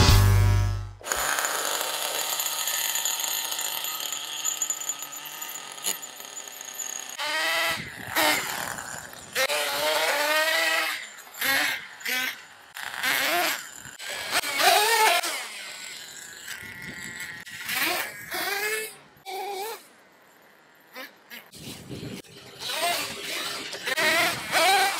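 Nitro engine of a 1/10 BSD Racing RC truck, an OS .18 (3.0 cc) two-stroke glow engine, revving up and down in repeated surges with short gaps between them as the truck drives. A moment of intro music comes first.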